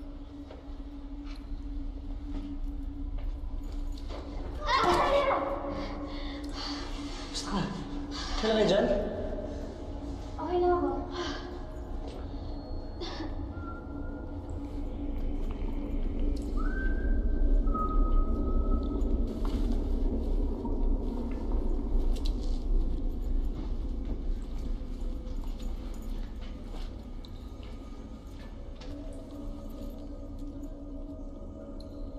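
Horror film soundtrack: a low steady drone runs throughout, broken by three loud vocal cries with falling pitch in the first third. Thin eerie high tones follow as the sound swells.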